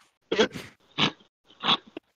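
A man laughing in three short, breathy bursts, about two-thirds of a second apart.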